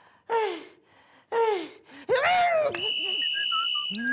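A man's comic cries of pain, four short wails that each fall in pitch. About three seconds in, a steady high whistle tone starts and holds to the end.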